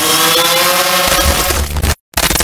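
Sound effects for an animated logo intro: an engine-like whine that dips and then rises over a whooshing hiss, with a deep bass rumble coming back about halfway through, then cutting off abruptly at the very end.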